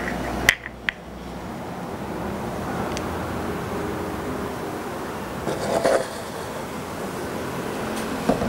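Water poured from a plastic bottle into a small plastic measuring cup: two sharp clicks about half a second in, then a steady trickle of pouring.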